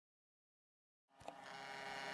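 Silence, then from just past a second in a faint steady hum made of several even tones, with a small click at its start, from the ping pong plotter's stepper motors and electronics running as it draws on a bauble.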